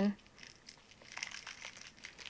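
Colored crushed glass trickling out of a small paper cup, a faint, irregular scatter of small ticks and crinkles starting about half a second in.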